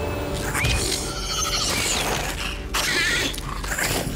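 Sci-fi spacecraft sound effects as the ship sets down: its machinery creaking, whirring and squealing, with film score underneath.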